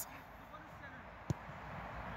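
A single dull thump about a second in, a football being struck in a shot at goal, over faint steady outdoor background noise.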